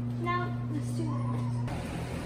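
A steady low electrical hum with two short high-pitched vocal sounds over it, about a third of a second and a second in; the hum stops abruptly near the end.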